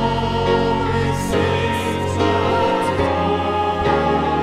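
Christian worship music: choir-like singing held over sustained chords and a bass line.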